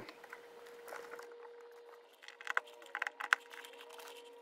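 Faint handling noise of electronics and cables being set in place: scattered small clicks and rustles, with a run of sharper clicks between about two and three and a half seconds in, over a faint steady hum.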